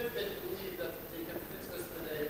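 Faint, distant speech: an audience member asking a question away from the microphone.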